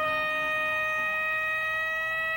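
Live blues-rock band, one instrument holding a single long, steady high note.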